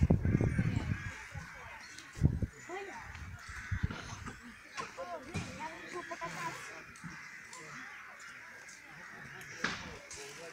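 Crows cawing repeatedly among other bird calls, over faint distant voices, with a few low knocks or bumps in the first couple of seconds.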